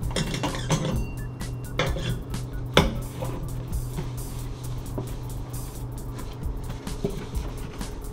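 A dry cloth wiping and buffing a stainless steel kitchen sink, with scattered light metallic knocks and clinks against the sink and its drain strainer, the sharpest about three seconds in. Background music plays throughout.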